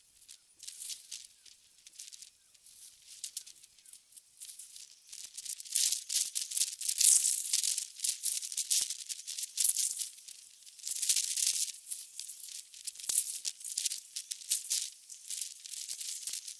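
A dry, irregular rattling hiss in quick uneven bursts, shaker-like, growing louder about six seconds in.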